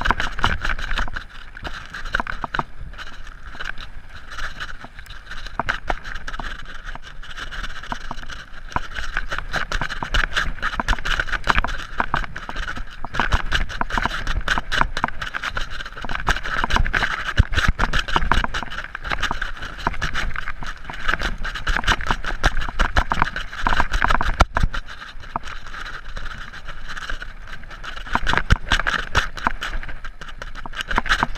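Mountain bike rattling over a rough, dusty dirt trail at speed: a continuous dense run of small knocks and clatter from the bike, with louder jolts now and then.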